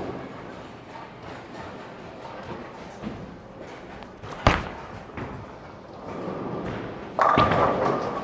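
A Storm Night Road bowling ball landing on the lane with one sharp thud about four and a half seconds in, rolling down the lane, then a loud crash of pins near the end.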